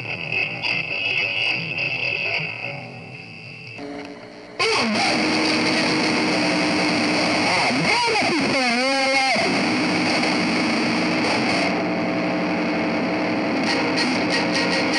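Live music with guitar strumming. About four and a half seconds in it jumps suddenly to a loud, distorted, noisy wash, with wavering tones sliding up and down partway through.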